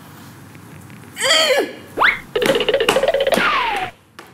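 Comedy sound effects: a short falling pitched sound, a quick rising whistle-like sweep, then a held tone that slides downward near the end.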